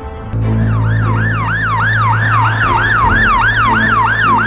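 Ambulance siren in a fast yelp: a rapidly repeating pitch sweep, about three a second, over a steady low hum, coming in about a third of a second in.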